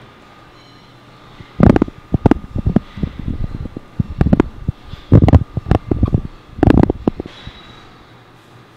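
Loud, irregular bursts of rumbling noise right on the handheld camera's microphone, coming in clusters over several seconds, like the microphone being bumped or rubbed or blown on.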